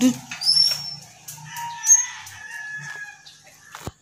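A rooster crowing, one long held call through the middle, with high bird chirps around it. A sharp click comes just before the end.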